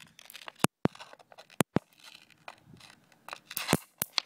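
Small amounts of dry nitrogen triiodide detonating on concrete as a rock is rolled over them. A series of sharp cracks: two pairs in the first two seconds, then a cluster near the end.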